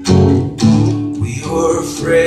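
Steel-string acoustic guitar strummed in a song accompaniment: a strong strum at the start and another a little over half a second in, each chord left ringing.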